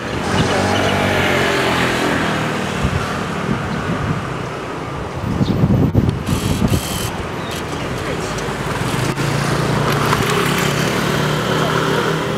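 Street traffic: a motor vehicle's engine runs close by as a steady low hum, with a louder, rougher stretch about six seconds in.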